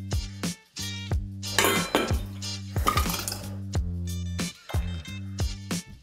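Background music, with a metal ladle clinking and scraping against a metal canning funnel and glass jar as chunky salsa is spooned in, in two short bursts about a second and a half and three seconds in.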